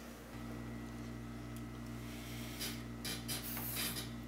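Quiet room tone with a steady low electrical hum and a few faint, soft clicks.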